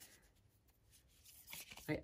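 Faint rustling and soft taps of a large oracle card deck being picked up and handled by hand, just before shuffling.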